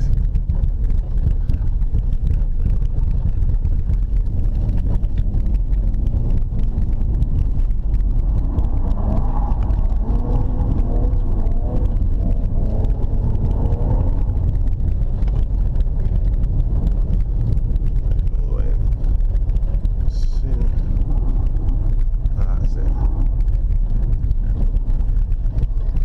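BMW 325ti Compact's 2.5-litre straight-six and its tyres, heard from inside the cabin as a steady low rumble while the car is driven and slid on an ice track. The engine note rises and falls for several seconds around the middle.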